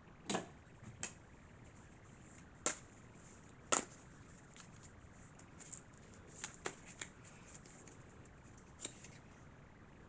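A tarot deck being handled and shuffled: a scattering of sharp card snaps and clicks, the loudest ones in the first four seconds, over a quiet room.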